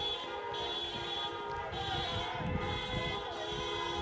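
Car horns held in long steady blasts, several pitches sounding together, with traffic rumbling past underneath.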